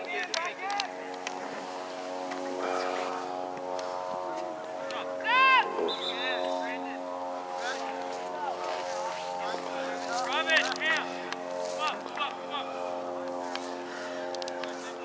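A steady motor drone runs throughout, with players' shouts carrying across the field over it. The loudest is a single high shout about five and a half seconds in, and a few more come near the ten-second mark.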